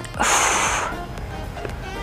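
A woman's forceful exhale, a breathy rush lasting under a second near the start, breathing out with the effort of a core exercise. Background music plays underneath.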